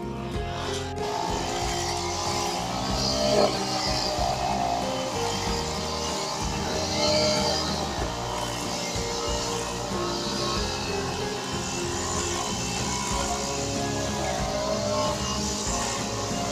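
Background music playing over a petrol brush cutter's engine running as it cuts grass; the engine comes in about a second in.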